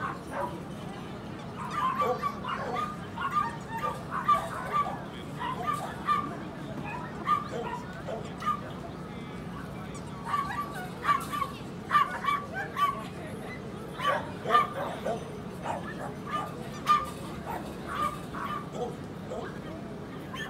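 A small dog yapping: short, sharp, high-pitched barks in quick runs of several, over and over, with brief pauses between runs.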